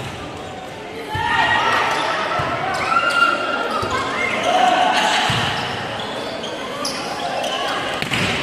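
Volleyball rally in an echoing gym: the ball is struck about four times, each hit a dull knock, while players and spectators shout and call over it from about a second in.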